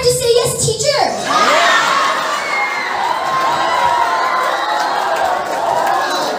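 A crowd of children shouting and cheering together, a dense overlapping mass of voices that begins about a second in and holds steady.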